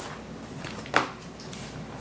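A swatch binder and a sheet of cardstock being handled on a wooden table: a faint tap at the start, then one sharp knock about a second in.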